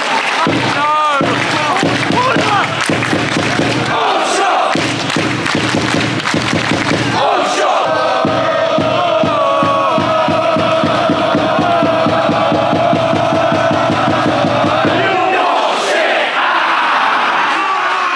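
Football crowd chanting, then the whole stand holding one long "oooooo" for about seven seconds as the opposing goalkeeper runs up to a goal kick, breaking into a mass shout of "aargh" as he strikes it: the traditional goal-kick taunt.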